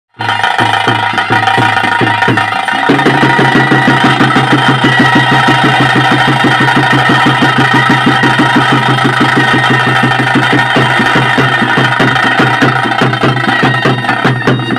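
Traditional bhuta kola ritual music: a sustained, piping wind melody held over fast, even drumming. The drumming picks up to a quicker, denser beat about three seconds in.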